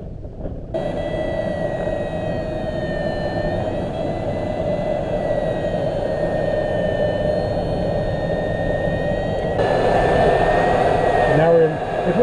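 The tow plane's engine runs steadily ahead of a glider under aerotow, with air rushing past the canopy. The sound shifts about ten seconds in, and a voice starts near the end.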